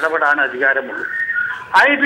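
Speech only: a man talking in a thin, phone-line voice, with one note held steady for about half a second just past the middle.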